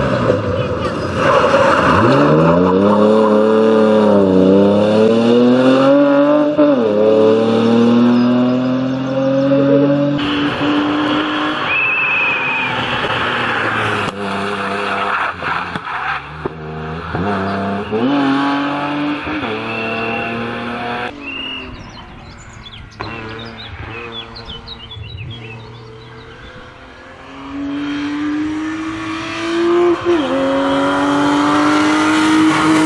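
BMW E36 320i rally car's 2.0-litre straight-six engine revving hard, its pitch climbing and dropping again and again through the gear changes, with a couple of short high squeals. It fades for a few seconds, then grows loud again near the end as the car comes closer.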